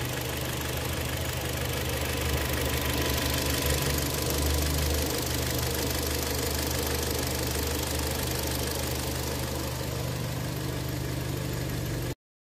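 2012 Kia Sportage's four-cylinder petrol engine idling steadily, heard close from the open engine bay; the seller states the engine works properly.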